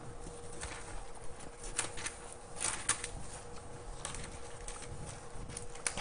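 Bible pages being turned and rustled while looking for a passage: a handful of short papery rustles spread through the stretch, over a faint steady hum.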